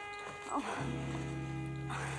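Background music holding a sustained chord. About a second in, a low, steady hum starts abruptly beneath it, fitting the motor of a coin-operated vibrating massage bed switching on. A brief sound comes just before the hum.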